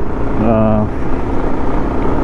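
Bajaj Pulsar 150's single-cylinder engine running steadily while the bike is ridden along a road, with a continuous low rumble of engine and wind. A short held vocal sound comes about half a second in.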